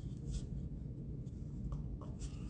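Faint steady low room hum with a few soft, short scratchy handling noises as a white disposable cup is picked up to drink.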